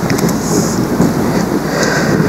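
Audience in the hall clapping and stirring: a dense, steady wash of noise as loud as the speech around it.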